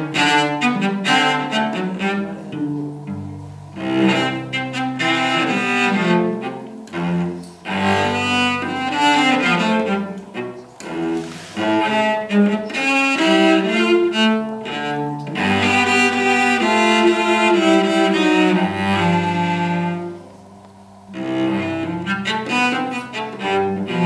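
Solo cello played with the bow: a continuous passage of changing notes, some held and some moving quickly, with a short quieter moment about twenty seconds in.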